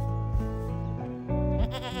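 Goat bleating once near the end, a quavering call, over steady background music.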